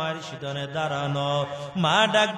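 A man's voice chanting in a sung, melodic sermon style through a microphone, holding long steady notes and sliding sharply up in pitch near the end.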